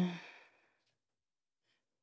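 A woman's drawn-out hesitation sound, 'uh', fading out in the first half-second, then near silence.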